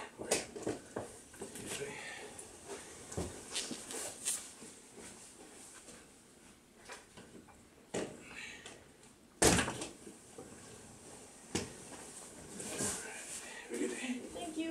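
A door and luggage being handled in a small room: scattered knocks and clunks, the loudest about nine and a half seconds in, with faint voices in the background.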